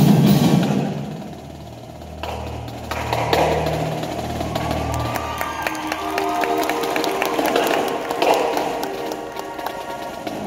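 Indoor winter percussion ensemble playing. A loud passage dies away in the first second, then low held notes come in under scattered light taps, and higher held notes follow with quick strikes.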